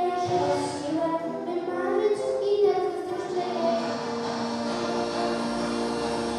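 A young girl singing into a microphone over a musical backing track. About three seconds in, the sound changes to steadier, long-held notes.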